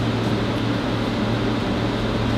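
Steady low hum with an even hiss of background room noise, unchanging throughout.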